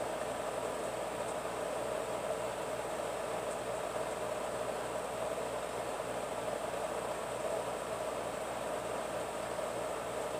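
Steady room background noise: an even hiss with a low hum, unchanging, with no distinct events.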